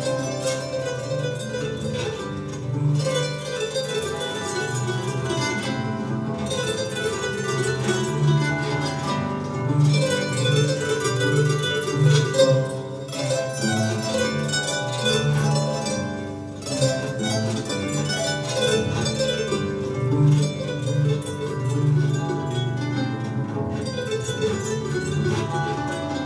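Solo harp: a quick plucked melody over a steady, repeating pattern of low bass notes.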